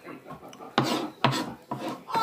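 Kitchen knife scraping across a cutting board: three short rasping strokes in the second half, about half a second apart.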